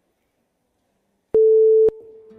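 A single loud, steady electronic beep, one pitch held for about half a second, starting about a second in and cut off sharply, with a click at its start and end.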